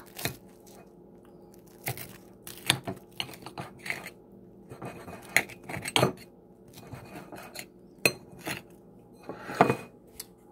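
Knife slicing through a toasted waffle sandwich on a ceramic plate, the blade scraping and clinking against the plate in scattered, irregular strokes.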